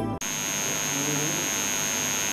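Background music cuts off abruptly a moment in, leaving a steady electrical hiss with a constant high-pitched whine: the noise floor of the studio recording equipment.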